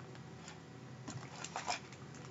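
Faint clicks and rustles of craft supplies being handled: a plastic paper punch set down and a stamp set in a clear plastic case picked up.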